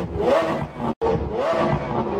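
Car engine revving up in repeated rising sweeps, like an accelerating car shifting through gears, broken by a brief cut to silence about halfway through.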